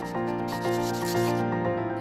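A series of scratchy strokes, like chalk writing on a blackboard, over background music with long held tones.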